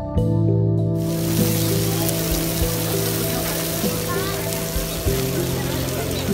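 Background music with long held notes; about a second in, the loud, steady rushing hiss of an erupting geyser's jet of water and steam comes in over it.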